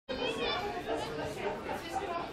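Indistinct chatter of several voices talking.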